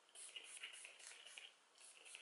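Very faint shaking of a bi-phase setting spray bottle, its liquid swishing in a series of short bursts, with a light spritz of face mist near the end.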